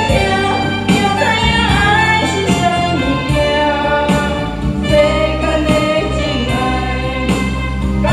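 A woman singing through a microphone and PA system over instrumental backing music with a steady beat, holding long notes.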